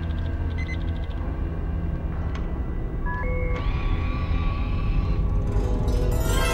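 Dark film-soundtrack drone, low and steady, with short electronic beeps and then held electronic tones that step up in pitch about halfway through, like a computer image-scanner working. The level rises gently toward a swell of music at the end.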